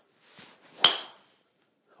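TaylorMade M1 driver striking a teed golf ball: a brief swish of the downswing, then one sharp, ringing crack of impact just under a second in. It is a solidly struck drive, 'as good as it gets'.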